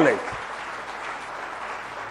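Audience applauding: a steady, even clapping from a seated crowd, much quieter than the speech around it.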